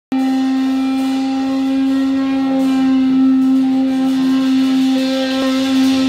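A single electric guitar note held steady through the amplifier, sustaining at one pitch without fading.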